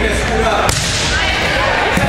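A volleyball struck by hand with a sharp smack about two-thirds of a second in, and another hit at the very end, over the chatter and shouts of spectators and players.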